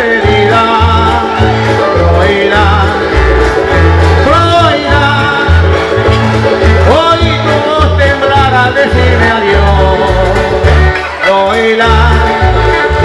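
Live Canarian folk music from a parranda string band: guitars keep a steady rhythm over regular deep bass notes, with a melody line on top.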